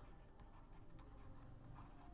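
Faint scratching of a stylus writing on a tablet.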